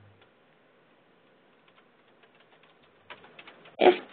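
Faint, scattered keyboard typing heard over a narrow-band conference-call line. The clicks grow denser and louder in a short run about three seconds in.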